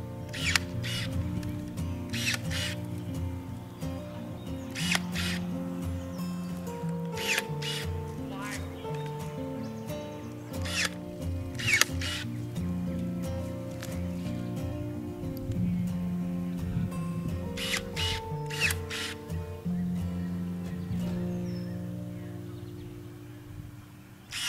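Background music plays throughout, over about a dozen short, sharp snips from a battery-powered pruner cutting apricot branches, often two or three in quick succession.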